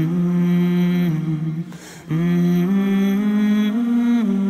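Unaccompanied vocal nasheed: voices hold long wordless notes that step between pitches, with a short break for breath about halfway.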